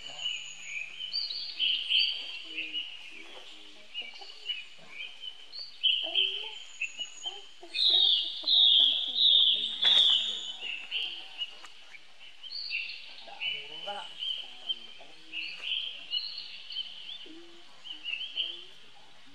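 High-pitched chirping calls from forest wildlife, near continuous, with a louder run of calls about halfway through and a sharp click just after.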